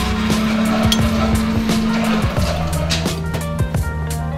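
Milkshake spindle mixer running, a steady motor whir that drops slightly in pitch about two seconds in, with background music.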